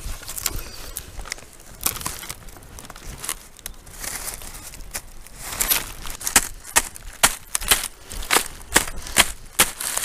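Wooden thatching tools knocking on a reed thatch roof: a crackling rustle of dry reed stems, then from about halfway a run of sharp knocks, roughly two a second, as the wooden mallet and legget strike the spars and dress the reed.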